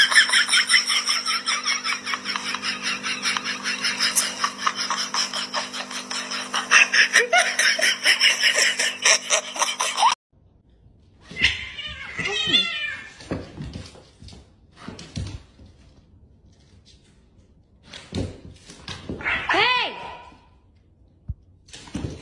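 A person's voice with rapid, laughter-like pulsing and a steady hum beneath, cutting off suddenly about ten seconds in. After that come a few short, pitch-bending calls from a person or a cat, with quiet gaps between them.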